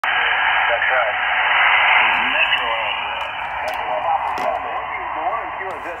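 Icom IC-7300 transceiver receiving lower sideband on 7.168 MHz in the 40 m band: a steady hiss of band noise, strongest in the first two seconds, with the faint, warbling voice of a distant station coming through it.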